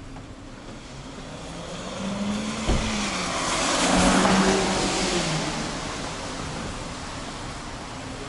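A car passing close by on a wet street: tyre hiss on the wet road and engine hum swell to a peak about halfway through, then fade away.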